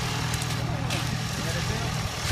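A vehicle engine idling steadily, with faint voices over it.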